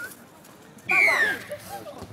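A spectator's single high-pitched shout, falling in pitch over about half a second, about a second in, with other voices around it.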